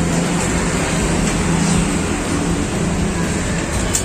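Steady road traffic noise from passing vehicles: a continuous, even noise with no distinct events.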